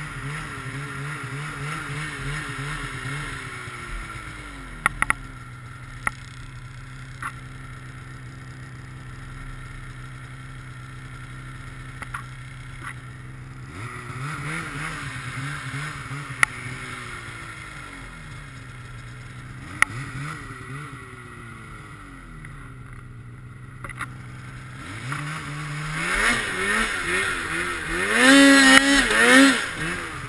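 Snowmobile engine running through deep powder, its revs rising and falling several times and climbing to a loud, high rev near the end before dropping back. A few sharp clicks or knocks are heard along the way.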